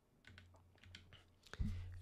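Faint clicks of computer keyboard keys as a number is typed into a software field, over a low steady hum.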